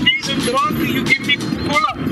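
Voices talking indistinctly over a steady low rumble.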